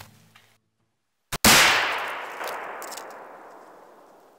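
A single loud rifle shot about a second and a half in, preceded by a short click, its echo dying away slowly over the next few seconds. Before it, the tail of music fades out into a moment of silence.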